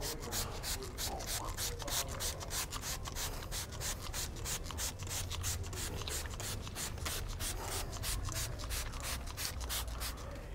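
Hand spray bottle of fabric protector squeezed again and again, a quick run of short hissing sprays at about four or five a second, misting onto cloth seat upholstery.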